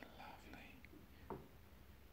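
Near silence: faint breathy noise at the microphone with two soft clicks, the second, slightly fuller one about a second and a third in.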